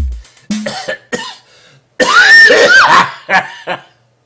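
Two beats of a drum with deep bass in the first half-second. After a short lull, a person lets out a loud, rough vocal outburst about two seconds in, which breaks into short bursts of laughter near the end.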